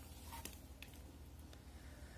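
Near silence: a faint low hum of room tone with a few soft clicks.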